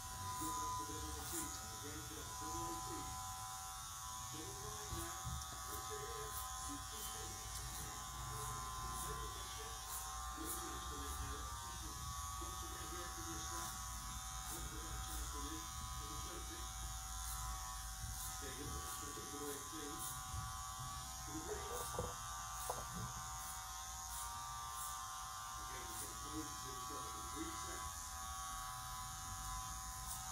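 Electric hair clippers running with a steady, even buzz during a haircut. There are scattered light ticks as the clippers and comb work through the hair.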